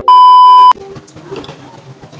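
Colour-bars test-tone beep used as an editing transition: one loud, steady beep lasting just over half a second that cuts off sharply, followed by only faint background sound.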